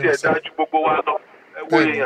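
Only speech: a man talking in short phrases with pauses, his voice thin and narrow as if over a phone or radio line.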